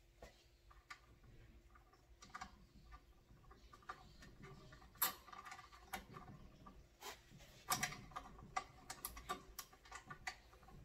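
Faint clicks of a ratcheting wrench on a reusable hydraulic hose fitting, sparse at first, then a quicker run of clicks in the last few seconds.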